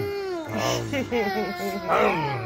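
Toddler laughing in high, squealing bursts, with a man's low voice humming underneath.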